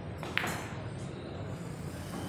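A pool cue striking the cue ball: one sharp click with a brief ringing, about a third of a second in, as a shot is played on a pool table.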